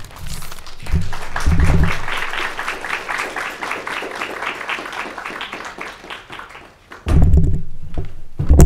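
Audience applauding, dying away over about six seconds. There are low thumps on the lectern microphone about a second in and again near the end, as the speakers change over.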